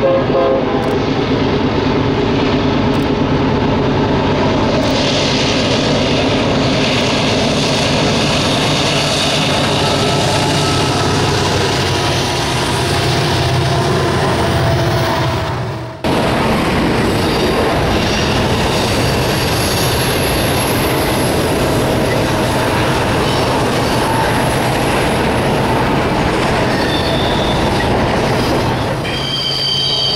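Diesel locomotives of a freight train running past with a steady engine drone. After a sudden cut about halfway, a double-stack container train rolls by on a curve with wheel rumble and high-pitched wheel squeal, loudest near the end.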